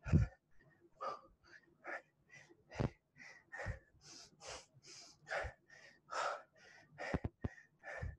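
A man panting hard from exertion during a leg workout, short quick breaths about two a second, with a few dull thumps among them.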